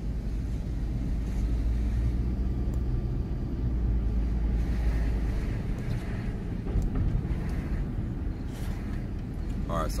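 Car driving along a city street, heard from inside the cabin: a steady low rumble of engine and tyre noise.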